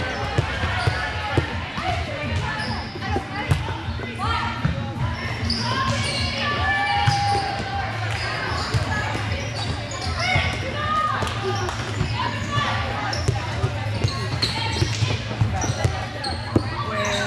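Volleyball rally in a large, echoing gym: the ball being struck and hitting the court at irregular intervals, over players' calls and spectator chatter.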